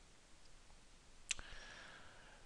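A single computer mouse click, about a second and a half in, pressing a Restore button in a quiet room. A faint tone follows the click.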